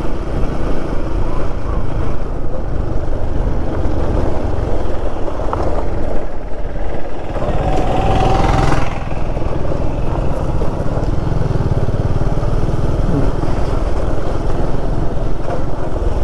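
Single-cylinder Yamaha FZ motorcycle engine running steadily at low speed on a rough dirt road, picked up by a camera on the bike. A brief higher tone cuts in about eight seconds in.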